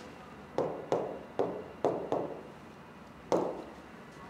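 Fingertip taps on a large touchscreen display while typing on its on-screen keyboard: about six irregular knocks, with a longer pause before the last one.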